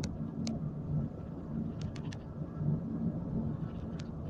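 Steady low rumble of a moving vehicle heard from inside the cabin, with a few faint clicks about half a second in and again around two seconds in.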